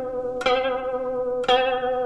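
Solo Chinese zither music: two plucked notes about a second apart, each ringing on with a wavering, vibrato pitch.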